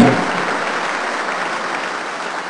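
Large congregation applauding, the applause slowly dying away.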